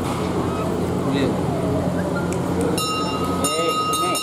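Indistinct voices of several people talking at once over a steady low hum. A little before the end, a steady high-pitched tone sets in and holds.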